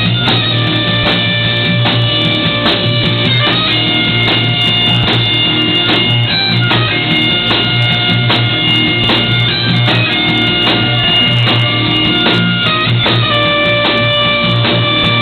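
Bagpipes playing a melody of held notes over their steady drone, backed by a live rock band's electric guitar and drum kit.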